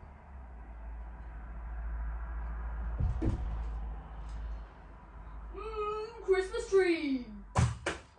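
A low rumble and a thump about three seconds in, then a high, wordless voice gliding down in pitch, and a sharp knock near the end.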